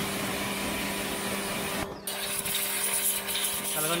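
Kawasaki HPW 220 electric pressure washer running, its pump motor humming steadily under the hiss of the high-pressure jet striking a motorcycle's rear wheel and frame. The spray breaks off for a moment about halfway through, then starts again.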